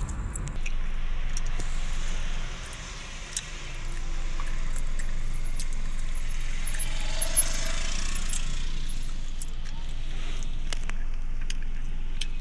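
Road and engine noise from inside a moving car, with scattered light clicks and rattles; the noise dips briefly for about a second a few seconds in.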